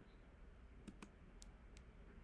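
Near silence: room tone with a few faint, sharp clicks about a second in.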